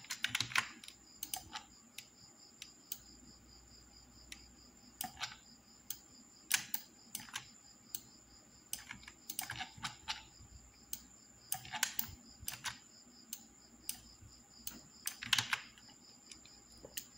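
Irregular clicks of a computer mouse and keyboard, one to a few a second with a few louder clusters, as a pen-tool selection path is clicked out point by point. A faint steady high-pitched whine runs underneath.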